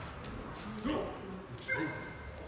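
Two short, high-pitched vocal calls, one about a second in and a higher one near the end.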